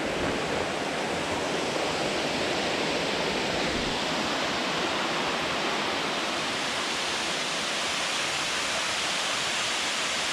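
Steady, unbroken rush of running water.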